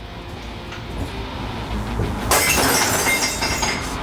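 Glass smashed with a hammer in a rage room: a sudden crash of shattering glass a little past halfway, with breaking and shards going on after it.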